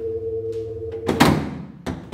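A sustained, eerie drone cuts off about a second in with a loud thud that rings out. A shorter, sharp knock follows near the end.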